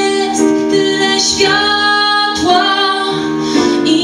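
A woman singing long held notes while accompanying herself on piano.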